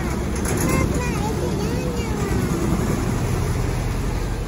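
Engine of a small motor work boat running as it passes close by on a canal, a steady low drone.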